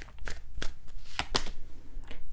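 A deck of tarot cards being shuffled by hand, with several sharp card clicks at irregular intervals.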